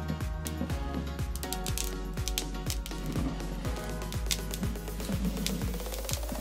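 Background music with a steady beat, a low drum hit about twice a second under sustained chords.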